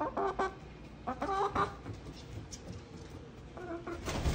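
Chickens clucking in three short bouts of calls: at the start, about a second in, and again just before the end.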